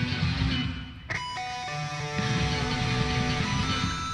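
Live rock band music playing back, led by electric guitar: a short dip about a second in, then held chords over a driving low end.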